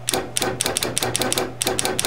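Illuminated pushbutton on a CNC jog control panel pressed again and again in quick succession, each press and release giving a short double click. There are about five presses, over a steady low hum.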